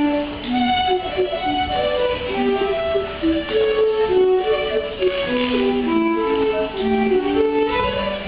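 Live band playing an English country dance tune, with a fiddle carrying a melody of clear, held notes.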